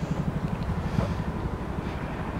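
5.7-litre Hemi V8 idling steadily, with an even exhaust beat.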